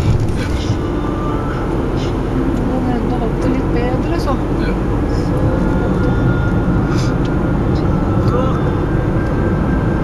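Steady engine and tyre noise of a car driving on a snowy road, heard from inside the cabin, with a few faint clicks.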